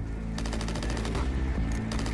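Machine-gun fire: a fast, even rattle of shots starting about half a second in.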